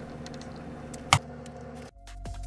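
Faint clicks and small rattles of electrical parts being handled, with one sharp click about a second in, over a low steady hum.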